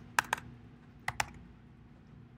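Return key on a computer keyboard pressed twice, about a second apart, each press heard as a quick pair of clicks.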